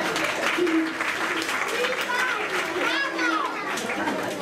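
Many children's voices chattering at once in a hall, overlapping with no clear words.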